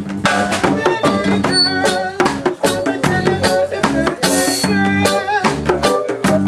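Electronic keyboard playing a melody in chords over a steady percussion beat.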